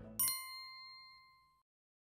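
A single bright ding sound effect, like a small bell struck once, ringing and fading away over about a second and a half as the background music stops.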